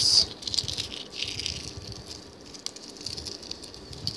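Crushed shell of a boiled egg crackling and rustling as it is peeled off by hand, with small irregular clicks of shell fragments breaking away.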